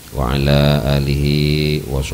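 A man's voice chanting a long, drawn-out Arabic phrase into a microphone, held almost level in pitch for well over a second.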